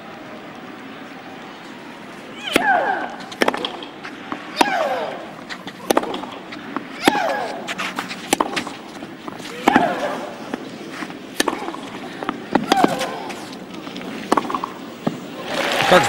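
Tennis rally on clay: the ball is struck back and forth about a dozen times, roughly once every second or so. A player's loud, falling-pitched shriek comes with about every other shot. Applause rises near the end as the point is won.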